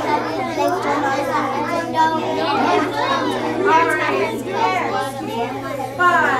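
Many children talking at once in a classroom, their voices overlapping in continuous chatter.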